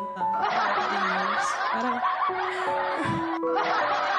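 Laughter over a piano instrumental backing track. It starts just under half a second in, breaks off briefly near the three-second mark, and then carries on.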